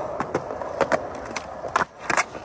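Skateboard wheels rolling on smooth concrete, with several short clicks and a sharper clack near the end.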